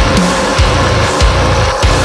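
Instrumental passage of a heavy metalcore song: distorted guitars and drums with heavy kick-drum hits and cymbals, no vocals.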